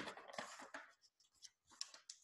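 Faint rustle of a large picture book's paper pages being handled and turned, with a few soft paper ticks near the end.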